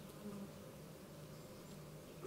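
Quiet background with a faint, steady low hum.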